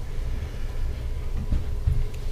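A steady low rumble, with two dull thumps near the end.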